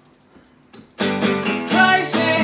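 Acoustic guitar: after a second of near quiet, loud strummed chords begin abruptly about a second in.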